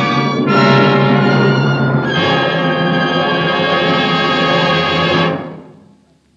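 Dramatic radio-drama music bridge closing a scene: loud held chords that shift twice, about half a second and two seconds in, then die away about five seconds in.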